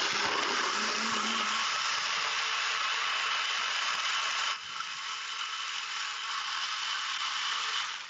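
NutriBullet Pro 900-watt personal blender running, crushing frozen fruit into a thick smoothie. The motor noise is steady, drops in level about four and a half seconds in, and stops near the end when the cup is lifted off the base.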